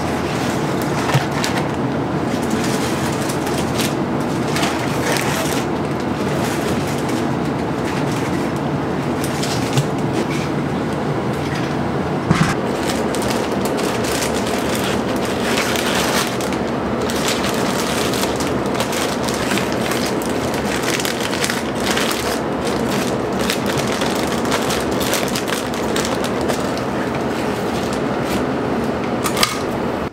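Laminar flow hood blower running with a steady whoosh and low hum, with a few sharp clicks from handling the bagged tins and the heat sealer.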